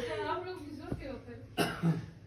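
A voice trailing off, then a cough in two short bursts about one and a half seconds in.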